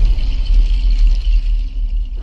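Deep, steady rumble with a thin hiss above it: the sound design of an animated logo intro, a cinematic stinger rather than a heartbeat.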